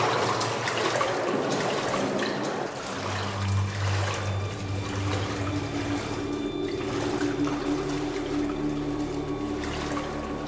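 Spring water running and splashing as someone wades through a narrow rock-cut tunnel. Low steady tones come in a few seconds in.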